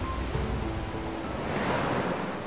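Ocean surf breaking, a steady rushing wash of waves, with soft background music underneath.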